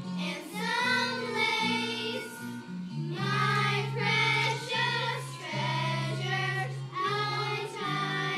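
A chorus of fourth-grade girls singing a song together in phrases, over an instrumental accompaniment of held low notes.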